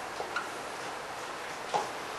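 A few short, faint clicks and squeaks from a marker on a whiteboard, over steady room hiss; the sharpest comes near the end.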